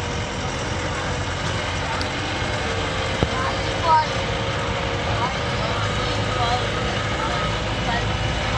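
Vehicle engine running steadily, heard from inside the cab while driving, with a single click about three seconds in and faint voices now and then.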